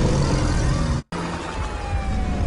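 Loud film sound effects: a heavy, dense rumble that cuts off abruptly about a second in, then a similar steady engine-like rumble with a faint, slowly falling tone.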